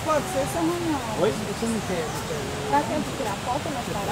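Indistinct voices talking over a steady rushing noise of a waterfall.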